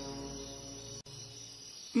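Sustained background music chord under an audio Bible reading, fading out about halfway through, over a thin steady high-pitched tone.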